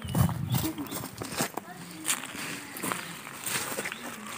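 Scattered rustles and light taps of hands and feet on dry leaf litter on bare ground, with a brief low murmur of voice at the start.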